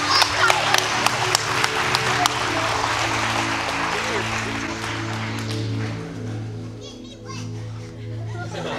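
Congregation applauding, the clapping dying away over about six seconds, over soft sustained background music. A few voices are heard near the end.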